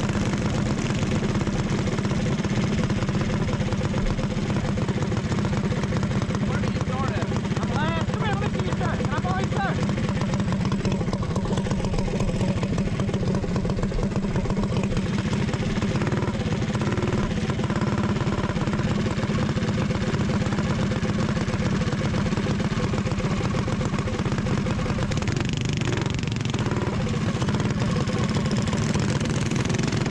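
Onboard sound of a Predator 212 single-cylinder four-stroke kart engine running steadily at low speed, a constant low drone with no revving, with other kart engines around it.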